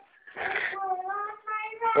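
A young child singing in a high voice. After a short break at the start, she holds one long, slightly wavering note.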